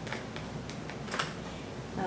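Staedtler Ergosoft colored pencils being put back into their case: a handful of light clicks and taps as the pencils knock together and against the case, the loudest about a second in.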